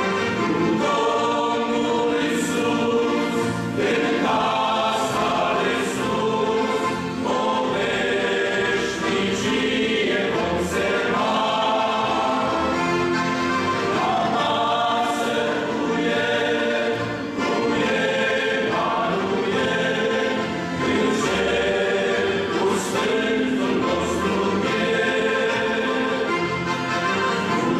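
A men's choir singing a hymn in several voices, sustained notes that change every second or so.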